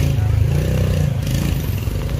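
Small engine of a Bajaj three-wheel mototaxi running close by, a steady rapid low putter that rises slightly in pitch about half a second in.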